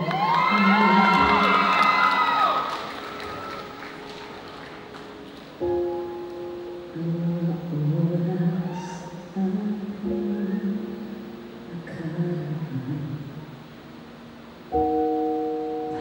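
A woman singing a slow, quiet ballad live into a microphone, opening on held high notes with wide vibrato, then singing more softly and lower. Under her, piano chords are struck three times, about five seconds apart.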